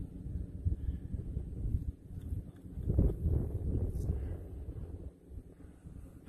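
Wind buffeting the microphone, a low rumble that swells about three seconds in and eases near the end.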